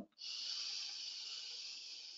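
One long audible breath from a person holding downward facing dog, a steady airy rush lasting about two seconds that fades slightly toward the end.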